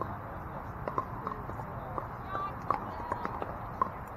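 Pickleball paddles striking the plastic ball: sharp, irregular pops several times a second, from more than one court at once.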